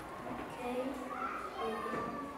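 Faint children's voices murmuring in a classroom.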